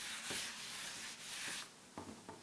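Blackboard duster rubbing across a chalkboard, wiping chalk writing off in steady scrubbing strokes; the rubbing stops a little before the end.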